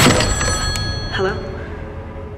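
A loud hit at the start dies away, then an old telephone's bell rings once briefly, with a fast trill, about a second in.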